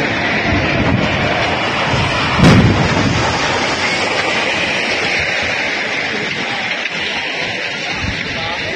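A span of a concrete cable-stayed bridge under construction collapsing into the river: a loud, continuous rumbling crash with one sharp boom about two and a half seconds in.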